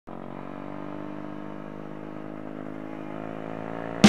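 Small motorbike engine running steadily, its pitch creeping up slightly near the end.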